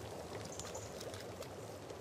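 A pan of salt brine at a rolling boil, heard as a faint, steady watery hiss.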